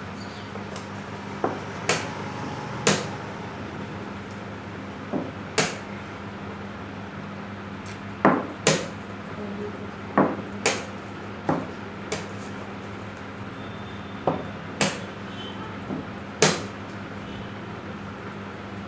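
Chess pieces being set down on the board and chess clock buttons being pressed during a blitz game: sharp clacks every second or two, often in quick pairs, over a steady low hum.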